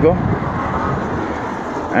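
Steady road traffic noise from the street, an even rumbling hiss with no distinct events, easing slightly near the end.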